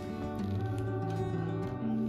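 Background music: gentle plucked acoustic guitar playing a slow melody.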